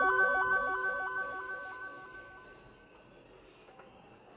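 End-screen electronic music fading out: a held tone with a quick repeating note pattern that dies away over about three seconds, leaving near silence.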